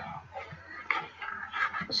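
Sheets of cardstock being handled and slid over a craft mat: soft rustling of card with a light tap about a second in.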